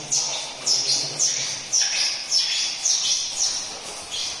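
A bird chirping: a string of high calls, each sliding quickly downward in pitch, about two a second.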